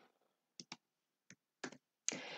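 A few faint, sharp computer mouse and keyboard clicks, some in close pairs, as text is pasted into a text box.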